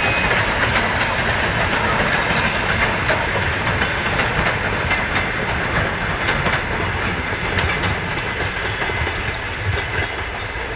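Suburban electric multiple-unit train running past on the rails: a steady rumble and rush of wheels with the clatter of wheels over rail joints, easing off a little near the end as it moves away.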